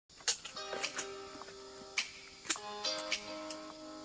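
Background music: held chord notes with sharp percussive clicks about every half second to a second.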